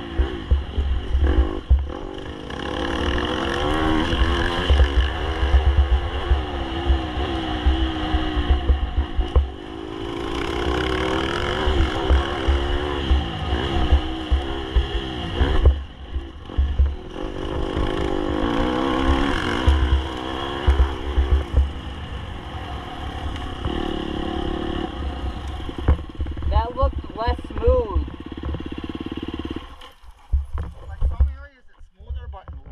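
Dirt bike engine revving up and down as it is ridden hard along a trail, pitch rising and falling repeatedly with brief drops when the throttle closes, with strong wind buffeting on the helmet-mounted microphone.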